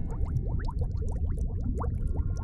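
Underwater bubbling: a rapid run of short rising bloops, several a second, over a low rumble.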